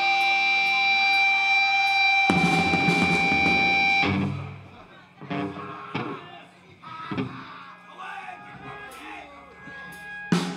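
Electric guitar through an amplifier, ringing with steady held feedback tones for about four seconds. A loud noisy crash of drums and guitar joins about two seconds in, and it all cuts off near four seconds. After that come scattered single drum hits and quiet guitar sounds.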